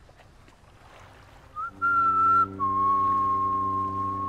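A clear high whistle: a short rising chirp, a held note, then a step down to a slightly lower note held for about two seconds. A low steady drone comes in under it.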